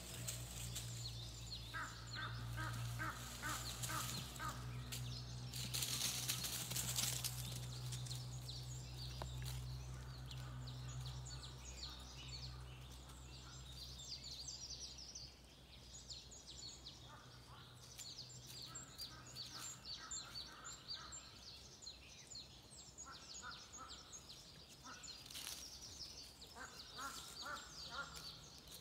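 Forest birds calling and singing: many short high chirps throughout, and several runs of quick repeated calls at a lower pitch. A low steady hum fades out about halfway through.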